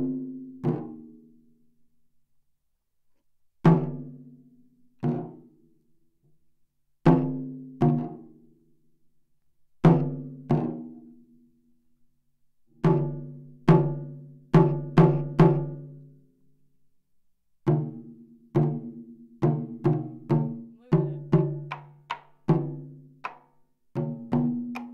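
Nagado-daiko (barrel-shaped taiko drums with tacked hide heads) struck with wooden bachi sticks. Single hits and pairs come first, then quicker runs of strokes in the second half. Each hit rings out with a deep tone, with short pauses between the groups.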